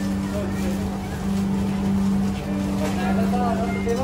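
A steady low hum runs throughout, with faint voices in the background.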